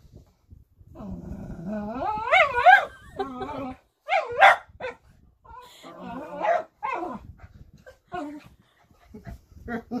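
A dog play-growling and whining in several bursts, with drawn-out rising-and-falling cries, as it asks to keep playing.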